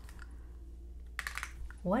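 Tarot cards being handled: a quick run of crisp card clicks a little over a second in, as a card is drawn from the deck.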